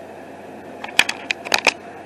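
Hands handling the camera: a quick run of about six sharp clicks and taps a second or so in, over a faint steady hiss.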